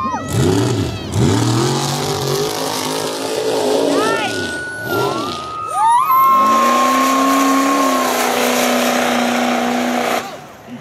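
Stroked-out 6.0 Powerstroke turbo-diesel engine of a mega mud truck revving hard, its pitch climbing and dropping several times as it goes on and off the throttle. It is then held at high revs for the last few seconds.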